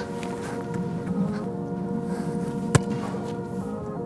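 Background music with steady held chords, and a single sharp knock about three-quarters of the way through.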